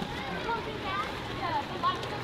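Indistinct voices of people around a swimming pool, in short scattered fragments over a steady background hiss.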